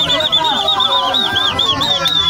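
A high whistle warbling up and down in quick arches, about six a second, over a busload of young men shouting and chanting. Right at the end it settles into one long held note.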